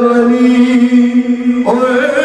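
A man singing a devotional naat unaccompanied into a microphone. He holds one long steady note for about a second and a half, then breaks and starts a new, higher phrase near the end.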